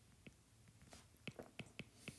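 Faint, irregular clicks of a stylus tip tapping on a tablet's glass screen while handwriting, about half a dozen in two seconds.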